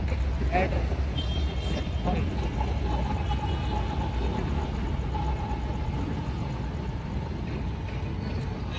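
Elevated metro train passing overhead: a steady low rumble, with a faint steady whine from about two seconds in until near the end, over street traffic.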